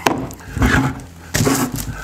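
A plastic 20V cordless-tool battery pack set down on a wooden tabletop with one sharp knock, followed by a couple of softer stretches of handling noise.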